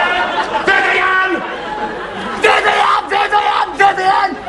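Soundtrack of a 1980s TV sitcom clip: several people shouting and talking over one another, with laughter about a second in.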